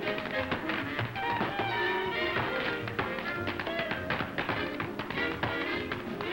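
Tap shoes rapping out quick, dense rhythms on a stage floor over a small band with piano playing a swing tune, from an old film soundtrack.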